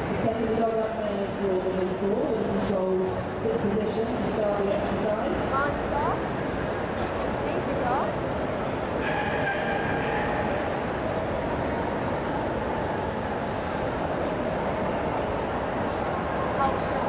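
Steady murmur of crowd voices in a large show hall, with dogs barking and crying somewhere in the hall: a few short rising yelps around six and eight seconds in, and a held whine about nine seconds in.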